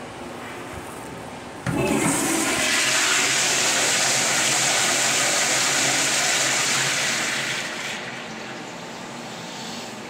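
Flushometer-valve flush of a wall-hung commercial toilet. A loud rush of water starts suddenly about two seconds in, runs steadily for about six seconds, then dies away.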